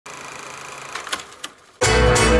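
Intro sound effect: a steady mechanical whirring hum, then three sharp clicks as it fades, and loud music cutting in abruptly near the end.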